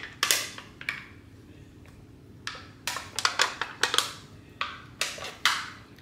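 A spatula scraping and knocking congealed bacon fat out of a foil container into a glass bowl of ground beef: a couple of short scrapes, a quiet spell, then a busier run of scrapes and taps in the second half.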